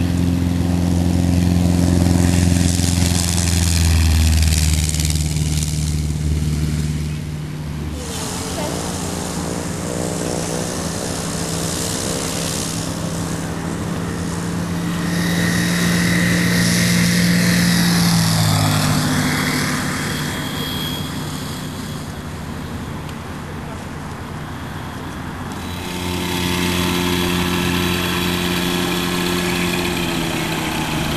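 Light aircraft engines and propellers of microlights running. One passes with its pitch falling at about 8 s and again around 18 s, and another engine comes in close about 26 s in.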